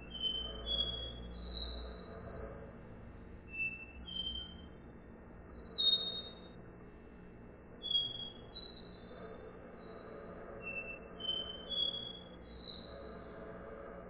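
Caboclinho (capped seedeater, Sporophila bouvreuil) singing its 'dó ré mi' song: clear whistled notes, about two a second, each a step higher than the last, in runs of four to six rising notes that start over again from the bottom.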